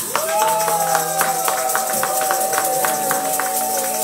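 Church keyboard music: a long-held sustained chord with a wavering vibrato, over a steady tambourine rhythm.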